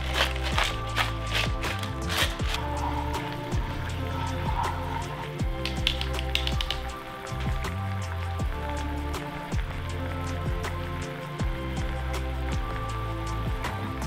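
Lo-fi background music with a steady bass beat, over the crackling sizzle of a garlic butter, white wine and lemon sauce bubbling in a frying pan.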